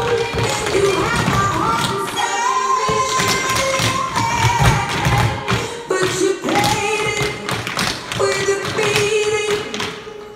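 Tap shoes of a group of dancers striking a hardwood floor in quick, rhythmic taps and stamps, over recorded music with a singer. The music drops away at the very end.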